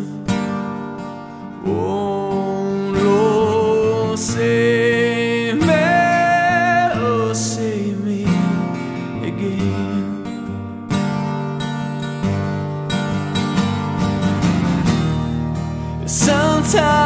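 Strummed acoustic guitar accompanying a male voice singing long held notes with no clear words.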